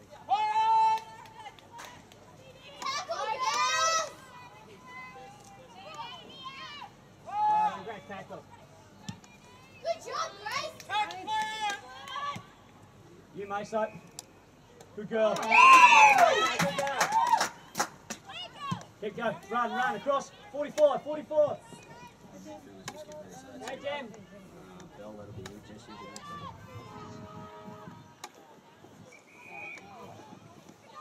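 Sideline spectators shouting and calling out in short bursts, with the loudest, highest-pitched shout about halfway through.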